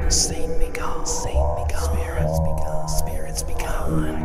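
Whispered voice with sharp hissing 's' sounds, over background music with a low steady drone.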